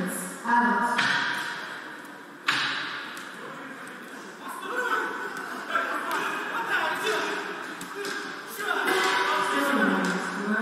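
Men's voices shouting in a large echoing sports hall, with two sharp thuds of gloved boxing punches landing, about half a second and two and a half seconds in.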